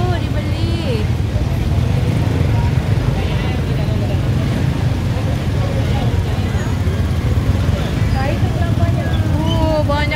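Motorbike engine running steadily at low speed, a constant low rumble, amid the chatter of a dense street crowd and other scooters. A voice speaks near the end.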